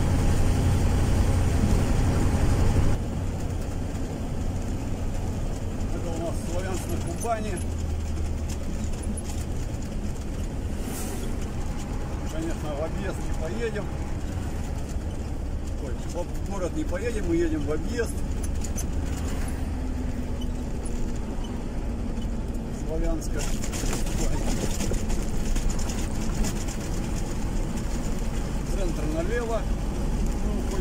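Steady engine and tyre noise inside the cabin of a car driving on a highway. It drops suddenly about three seconds in and grows louder and hissier again about two-thirds of the way through.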